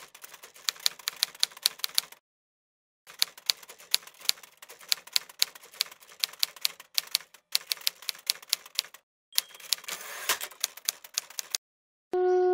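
Typewriter sound effect: runs of rapid key strikes broken by short silent pauses, with one heavier clack just after ten seconds in.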